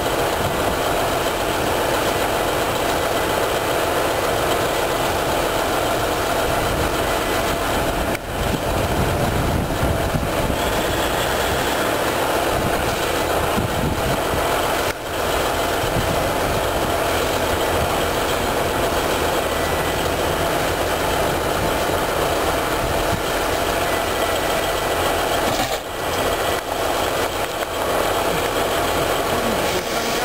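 NS Wadloper diesel-hydraulic railcars idling steadily.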